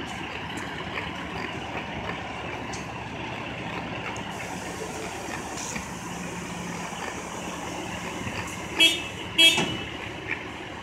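Steady rumble of city street traffic, broken near the end by two short, loud vehicle horn toots about half a second apart.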